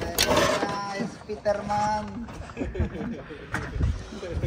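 Mostly voices talking, with one brief knock about three and a half seconds in.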